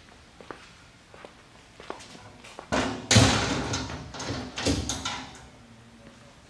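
A sheet-metal panel of a test-bench cart being handled: a sudden loud clatter a little before the middle, rattling on for about two and a half seconds, with a second knock about a second and a half after the first.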